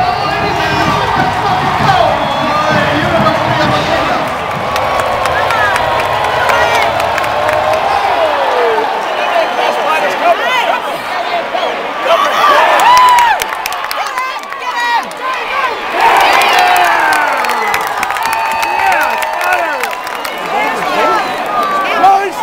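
Football stadium crowd cheering and shouting after a touchdown, with nearby fans' voices and whoops over the roar of the stands. Sharper shouts rise about halfway through and again a few seconds later.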